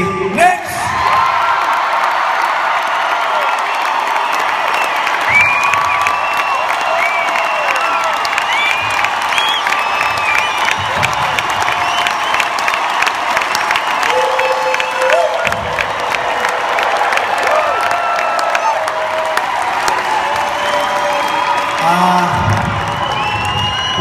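A large arena crowd cheering and applauding without a break, with many individual voices shouting and screaming over the roar. It is an ovation greeting a band member's introduction.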